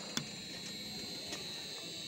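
Electric gear motor turning the stirrer of a stainless-steel cooking kettle, running steadily with a faint high whine and a single click shortly in.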